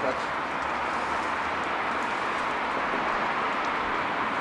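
Steady noise of a Tesla Model S creeping past at walking pace under Smart Summon: tyres rolling on asphalt, with no engine note from the electric drive.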